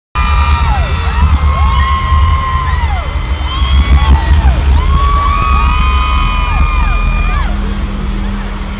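Loud live concert music with heavy bass in a stadium, with a large crowd screaming and cheering over it in many overlapping voices.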